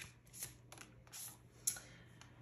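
A deck of oracle cards handled and shuffled by hand: a few short, soft card rustles, the sharpest about three-quarters of the way through.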